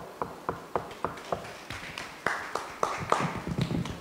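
A small audience clapping: a few separate hand claps at first, about four a second, growing into fuller applause in the middle, then thinning out.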